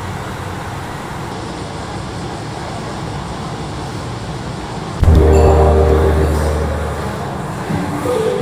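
Steady city noise, like traffic and rail around a big station. About five seconds in, a loud, deep ringing hit starts suddenly and fades over about two seconds, opening the video's music.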